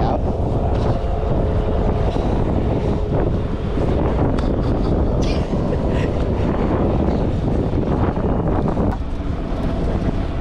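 Wind buffeting the microphone over choppy water, a steady low rush with no clear breaks.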